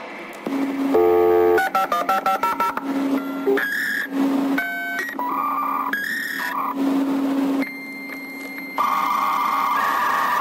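Electronic dance music in a breakdown without a kick drum: a run of short, rapidly changing synth beeps and bleeps over a held low note.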